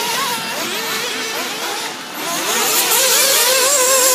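Several 1/8-scale nitro RC buggies, their small two-stroke glow engines running at high revs, overlapping in a high-pitched whine that rises and falls as they accelerate and brake around the track. The sound dips briefly about two seconds in, then swells again.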